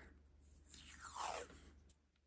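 Washi tape being peeled off its roll: a short rasping pull about a second in, falling in pitch.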